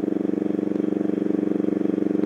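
Motorcycle engine running at a steady speed while the bike cruises, a steady, even engine note with no change in pitch.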